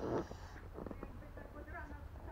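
A brief splash of water in a small inflatable paddling pool at the start, then faint voice sounds over a steady low wind rumble on the microphone.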